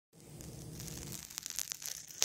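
Fingers handling a phone close to its microphone: scratchy rustling and a quick run of small clicks, over a low steady hum.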